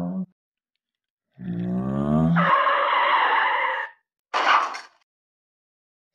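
Mouth-made toy-car noises: a voiced "vroom" running into a screeching skid sound, then a short whoosh, as the toy cars are driven off.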